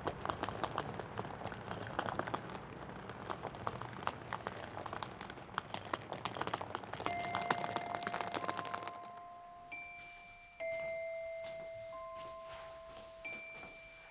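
Wheels of a rolling suitcase rattling and clicking over pavement for about nine seconds. About seven seconds in, soft glockenspiel-like chime notes of background music begin, single held notes at a few different pitches that carry on after the rattling stops.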